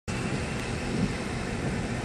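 Steady engine and road hum of a car, heard from inside the cabin.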